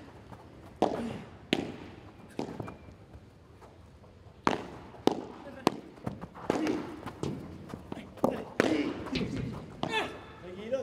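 A padel ball being struck back and forth with padel rackets in a rally, with sharp hits and bounces spaced about half a second to two seconds apart, coming faster in the second half.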